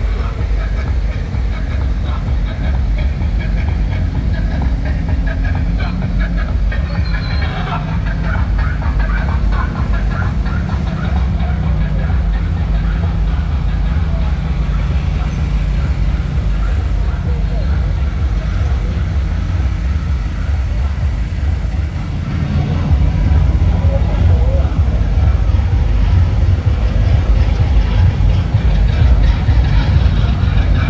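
Loud, bass-heavy dance music blaring from loudspeakers on slow-moving parade Jeeps, mixed with the low running of their engines; it gets louder about 23 seconds in.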